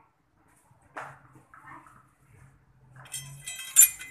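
A sword and its openwork metal scabbard being handled: small ringing metal clinks in the last second, topped by one sharp metallic click near the end.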